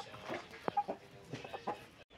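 Chickens clucking softly: a few short, scattered clucks.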